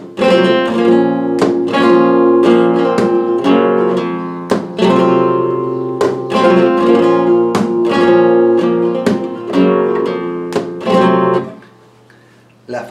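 Flamenco guitar strumming rasgueado chords in the three-beat compás of fandangos de Huelva, accenting the first beat, in the por mi (E Phrygian) position. The chords stop shortly before the end.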